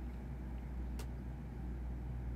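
Steady low hum of background room noise, with one short sharp click about a second in.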